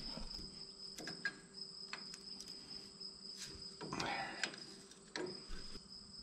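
Crickets chirring steadily in a high tone, with a few faint sharp clicks of a line wrench working a hydraulic line fitting.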